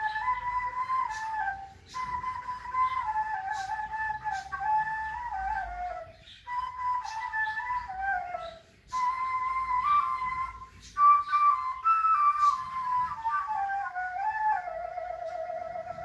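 Cane ney flute playing a slow solo melody in phrases that mostly step downward, with short breaks for breath between them. The last phrase settles on a long, low held note with vibrato.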